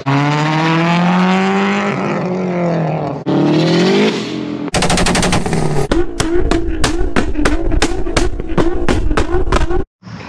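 Performance car engines revving hard in quick edited clips. The engine note rises and falls, then climbs again. It gives way to a rapid string of sharp exhaust pops and bangs, about three or four a second over a steady engine note, which cuts off abruptly near the end.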